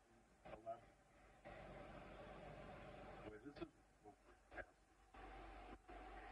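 Near silence: faint room hum with a few soft, scattered clicks of hands handling the bow's cam.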